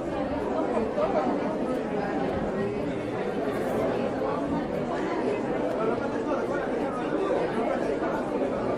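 Indistinct chatter of many shoppers' voices overlapping in a supermarket, steady throughout.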